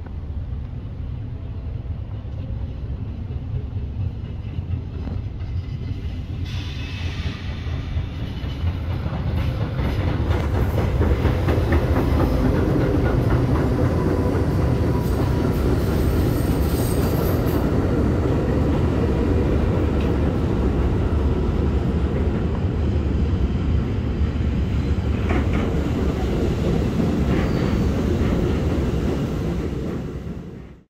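New York City subway train running on elevated track, its wheels rumbling and clacking over the rails, growing louder about eight to ten seconds in and staying loud, with a brief high wheel squeal a little past the middle.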